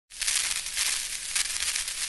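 A crackling hiss, a dense run of small irregular crackles, that starts abruptly just after the opening.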